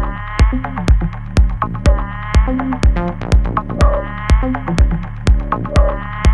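Live electronic music played on synthesizers: a steady four-on-the-floor kick drum at about two beats a second, with short pitched synth notes and stabs over it.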